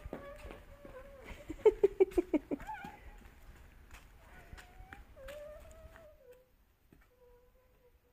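A toddler's voice: a held pitched sound, then a quick run of about eight short loud pulses around two seconds in, then a couple of sing-song calls rising and falling in pitch that fade away after about six seconds.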